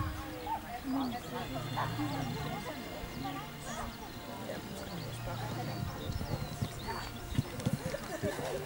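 Horse cantering on a sand arena, its hoofbeats thudding, with people's voices in the background.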